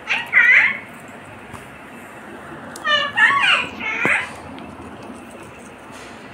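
A green parakeet gives short, high, voice-like calls: one right at the start and a quick string of them about three to four seconds in. A single sharp tap comes near the end of that string.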